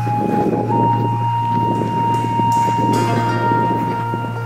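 Background music: a melody of long held notes, stepping up to a higher note a little under a second in, over a steady low drone.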